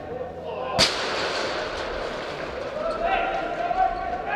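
A football kicked hard once, about a second in, the sharp smack echoing at length around a large indoor hall. Players shout in the second half.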